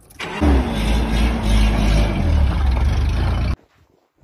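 A vehicle engine starting and then running fast, its pitch dropping and settling within the first second; the sound cuts off abruptly about three and a half seconds in.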